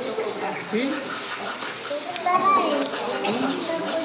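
Indistinct chatter of several voices in a room, children's voices among them.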